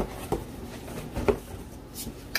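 Items being handled and rummaged in a cardboard shipping box, with a few light knocks and a rustle.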